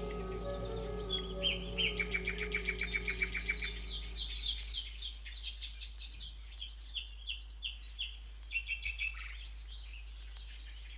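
Small songbirds singing over soft background music: the held music notes fade out about four seconds in, while the birds give a rapid run of chirps and then a series of single falling notes.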